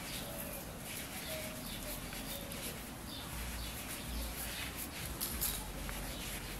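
Faint rubbing of a 3.5 mm crochet hook drawing No. 6 cotton twine through stitches as double crochets are worked, with a few soft short tones in the background during the first half.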